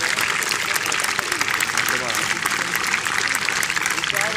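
A crowd clapping steadily, with voices talking underneath.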